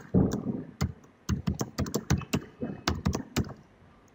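Typing on a computer keyboard: an irregular run of keystrokes that stops shortly before the end.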